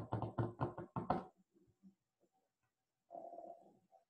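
A quick run of taps from hands working a computer device, about eight a second, which stops about a second in. A short low hum follows near the end.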